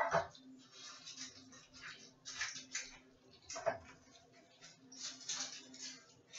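A clatter at the start, then quiet scraping and rustling as margarine is spread into paper cupcake liners in a metal muffin pan, with another light knock a little past halfway.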